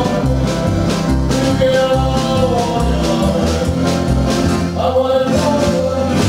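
Folk ensemble performing: several men singing together in harmony over strummed guitars and plucked lutes, with a pulsing bass line underneath.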